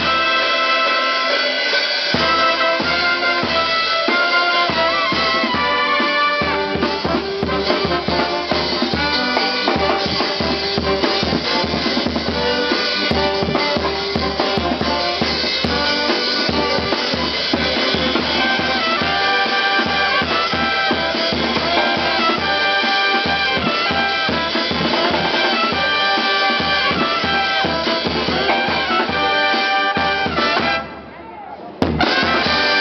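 A charanga, a street brass band of trumpets and trombones with a drum kit, playing a tune over a steady drumbeat.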